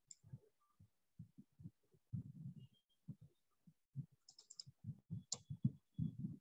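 Faint clicks of a computer mouse: a quick run of three or four about four seconds in and a single sharper one just after five seconds, over soft, irregular low thuds.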